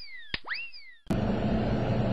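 Cartoon 'boing' sound effect on a logo intro: a click, then a whistle-like tone that springs up in pitch and slides slowly down, repeating about every three-quarters of a second. It cuts off sharply about a second in, giving way to a steady background hiss with a low electrical hum.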